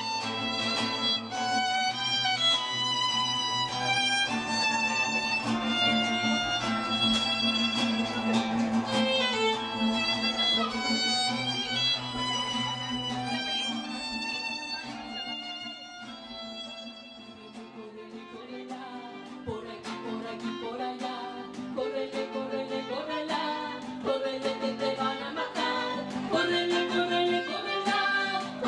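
Violin playing a melodic instrumental passage over acoustic guitar accompaniment, live. The playing drops quieter about two-thirds of the way in, then swells back up near the end.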